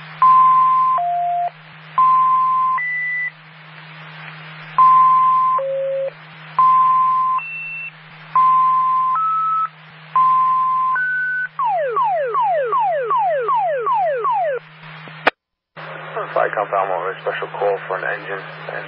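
Fire dispatch alert tones over a scanner radio channel: six two-tone sequential pages, each a steady tone near 1 kHz followed by a shorter tone at a different pitch, then about ten quick falling sweeps, alerting fire companies to a special call. A click and a brief dropout follow, then the dispatcher's voice resumes near the end, with a low hum under the channel.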